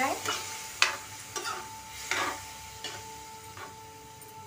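Steel ladle stirring and scraping through watery pea-and-masala gravy in a steel kadai, with a scrape or clink about once a second, the sharpest a little under a second in.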